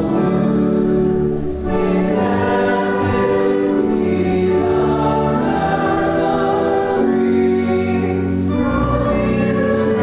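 Congregation singing a hymn in held notes that move in steps, over steady low sustained notes.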